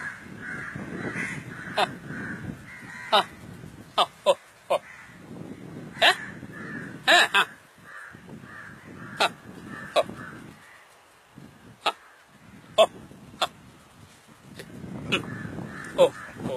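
Crows cawing, a dozen or so short harsh caws at irregular intervals.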